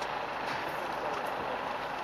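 Steady, even background hiss of road traffic, with no distinct events.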